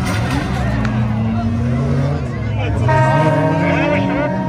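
Several stock car engines of the modified up-to-1800 cc class racing on a dirt track, their pitch rising and falling as the drivers accelerate and lift. About three seconds in, a steady horn-like tone is added.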